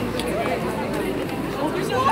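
Crowd chatter: many people talking at once.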